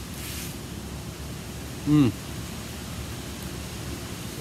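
A man's appreciative 'mmm' about two seconds in, one short hum falling in pitch, as he tastes a bite of smoked beef short rib. A steady hiss runs underneath, with a brief hiss just at the start.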